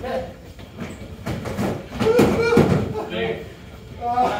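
Foam-padded swords and shields thudding against each other in a close sparring clash, with short shouts and calls from the fighters. A cluster of dull strikes about two seconds in is the loudest part.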